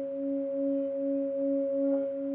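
Brass singing bowl sung by rubbing a wooden mallet around its rim: a sustained two-note hum, the lower note pulsing a little over twice a second.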